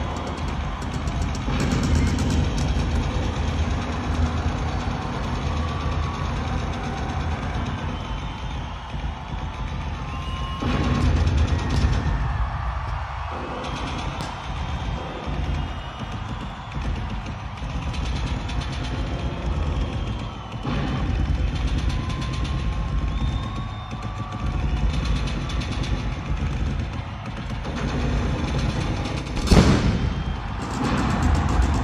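Loud live rock music in an arena, heavy on drums and bass, with guitar-like pitch bends, and a sharp loud hit just before the end.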